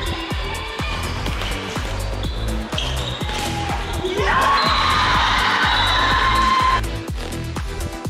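Electronic dance music with a steady beat. About four seconds in a rising sweep leads into a louder, fuller passage, which drops back just before seven seconds.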